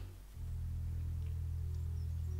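Soft background music of low, sustained notes, with a new chord coming in just after the start.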